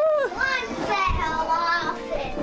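A child's high-pitched voice making drawn-out, wavering wordless cries and play noises, with a brief low bump about a second in.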